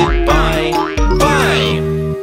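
Children's nursery-rhyme backing music playing its closing chords, with a cheerful cartoon voice speaking two short phrases over it ("Now let's say goodbye. Bye!"). The chords and bass stop at the very end, leaving one held note ringing.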